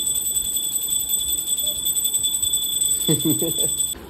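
Electronic ringing from a battery-powered baby toy: a steady high tone with a fast flutter that stops abruptly just before the end.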